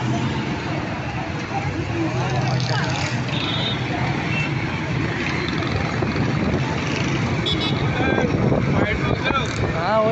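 Busy street traffic: many motorcycle and car engines running steadily, with people's voices in the background, louder near the end.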